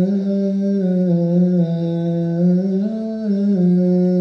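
Male liturgical chanting: one long, drawn-out melismatic line held on sustained notes that slide slowly up and down in pitch, in the style of a Coptic Orthodox church hymn.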